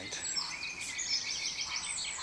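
Birdsong: several birds chirping and twittering at once, with quick high calls that overlap.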